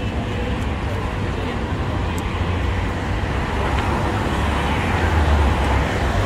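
Road traffic on a busy city street: a steady rumble of passing cars that grows a little louder near the end, with faint voices of passers-by.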